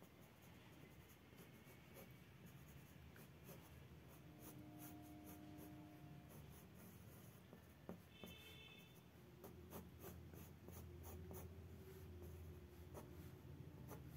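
Faint scratching of a pencil sketching lightly on drawing paper, in many short strokes.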